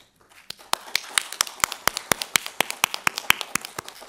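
Audience applauding: many sharp hand claps starting about half a second in and thinning out near the end.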